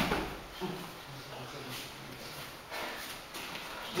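Faint rustling of heavy judo jackets and bare feet shuffling on a wrestling mat as the thrown partner gets back up, with a low murmur of voices in the room.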